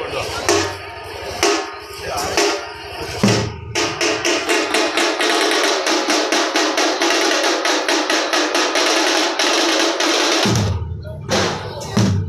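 Festival drumming: a few separate drum strokes, then a fast, even roll of sharp beats at about seven a second that runs for several seconds and breaks off near the end, over crowd voices.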